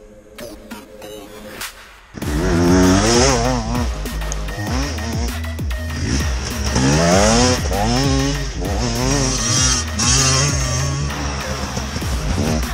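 Dirt bike engine revving up and down as it accelerates along a dirt track, coming in loudly about two seconds in. Electronic music with a heavy beat plays under it.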